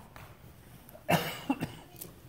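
A person coughing: one loud cough about a second in, then two short quick ones.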